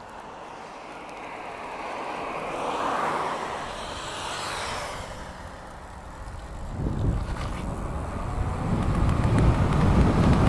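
A road vehicle passing by, its hiss swelling and fading around three seconds in. Then wind buffets the microphone, growing louder as the electric bike pulls away from a standstill and gathers speed.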